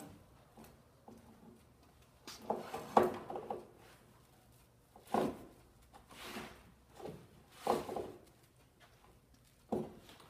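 Knocks and scrapes from a large bent PVC pipe and the heating tool's cord being handled on a wooden workbench. The sounds come in about five separate short bursts with quiet gaps between them.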